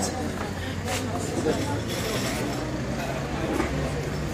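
A bus engine idling with a steady low hum, under the talk of a crowd standing around it.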